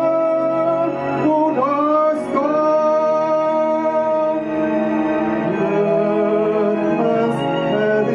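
A man singing long, held notes into a microphone, sliding up into new notes about a second and two seconds in.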